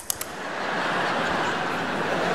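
The last couple of sharp tongue-click tuts at the very start, then a large arena audience laughing steadily.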